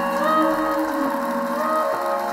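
Clarinet playing a slow solo melody of long held notes, sliding up into a new note shortly after the start and again near the end, over a sustained band accompaniment.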